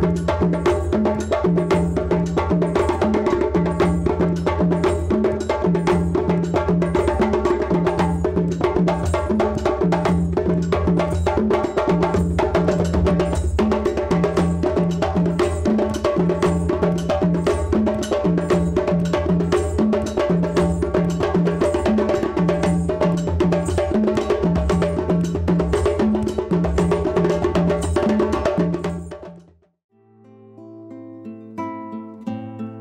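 Djembe hand drums played fast and steadily, over a repeating low bass-drum pattern, fading out near the end.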